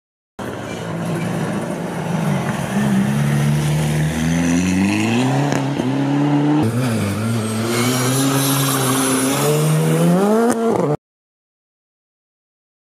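Rally car engines accelerating hard, the pitch climbing in steps and dropping back at each gear change. The sound jumps abruptly to a second car about halfway through and cuts off suddenly near the end.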